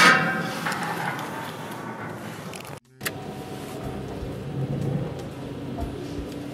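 A loud hit at the start rings out and fades over about two seconds. Then, after a brief cut-out, a car engine idles, heard from inside the cabin, swelling slightly about five seconds in.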